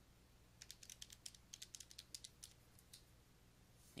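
Faint clicking of keys pressed in quick succession as the division is keyed in. There are about a dozen light clicks between about half a second and two and a half seconds in.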